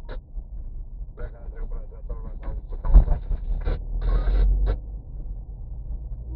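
A car driving slowly over a potholed dirt road, heard from inside the cabin: a steady low road rumble, with a few sharp knocks from the bumps, the loudest about three seconds in.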